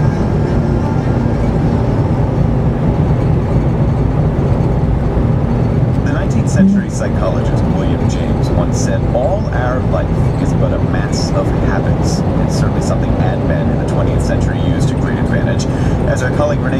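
Car interior noise while driving: a steady low road-and-engine rumble. From about six seconds in, a radio voice talks faintly over it.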